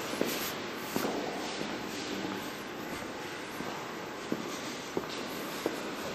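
Indoor room ambience: a steady hiss with about five scattered short knocks.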